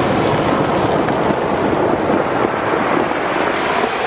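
Surf washing up over a beach of black pebbles: a loud, steady rush of water with the rattle of pebbles as the wave runs over them.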